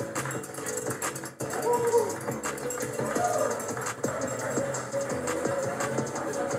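Instrumental background music composed by Filmora's Smart BGM Generation, playing back over a video clip with a steady beat.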